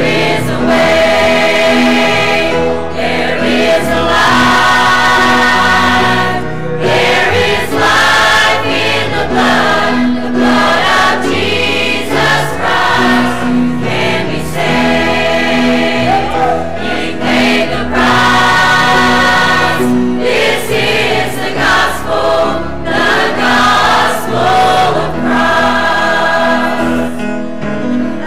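Church choir, mostly women's voices, singing a gospel song at full volume.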